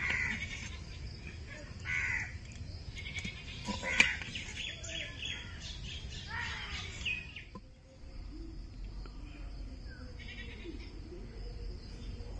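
Several short, harsh animal calls in the first seven seconds, with a sharp metallic knock of a ladle against a steel bowl about four seconds in. After about eight seconds only a faint low hum remains.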